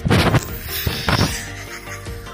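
Background music with squishing and squelching from blue slime-like play dough being squeezed in the hands, loudest in the first half second and again briefly a little past the middle.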